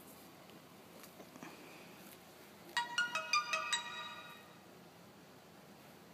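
Short electronic jingle: about seven quick chiming notes in about a second that ring out briefly, of the kind a phone plays as a ringtone or alert.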